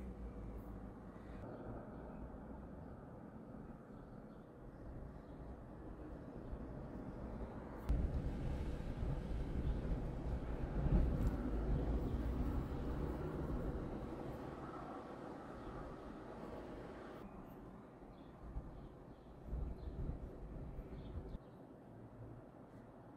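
Passing road traffic: a low vehicle rumble that jumps up suddenly about eight seconds in, swells to its loudest near the middle, then fades away, with a couple of smaller swells near the end.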